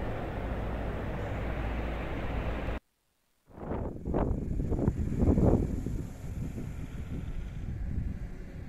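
Royal Enfield motorcycle riding through a roofed passage, its engine and road noise running steadily. The sound cuts out completely for a moment about three seconds in, then comes back as several short swells of engine noise before settling again.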